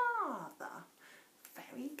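A woman's voice in an exaggerated sing-song: a high call sliding steeply down in pitch at the start, then a few short spoken syllables.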